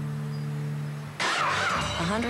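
Car sound effects on a TV car commercial's soundtrack: a steady low hum, then about a second in a sudden louder sound with a warbling pitch.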